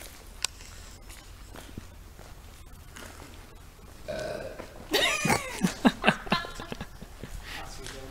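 A person makes a loud wordless vocal noise about five seconds in, its pitch swooping down several times over about a second and a half. A briefer held vocal tone comes just before it.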